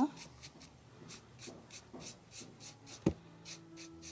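Stiff, dry paintbrush dry-brushing paint onto the edge of a tray rim: quick, even, scratchy strokes, about four to five a second, with a single sharp knock about three seconds in.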